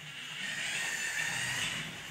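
The two small geared DC motors of a self-balancing robot whir steadily as it drives and turns: a hissy whir with a thin high whine in it, rising in just after the start.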